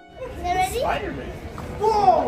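A child's excited, high-pitched voice calling out in short rising and falling exclamations, twice, over low background noise.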